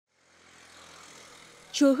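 Faint outdoor background sound fading in: a steady hiss with a low hum of distant traffic. A narrator's voice starts near the end.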